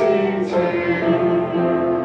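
A congregation singing a hymn together, the voices holding long notes.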